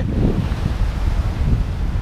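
Wind buffeting the microphone as a loud, rough low rumble, with the wash of small sea waves under it.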